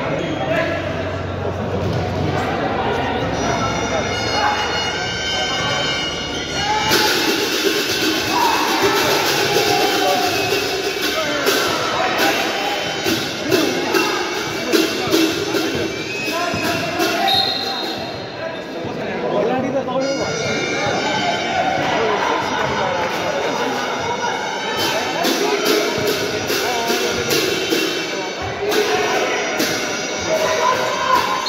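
A basketball bouncing on an indoor court during play, in a large echoing hall, amid voices and music.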